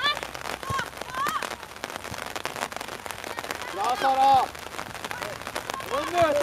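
High-pitched shouts and calls from young girls on and around a football pitch: brief calls near the start and about a second in, and a louder drawn-out shout about four seconds in. Underneath runs a steady outdoor noise with many faint crackling ticks.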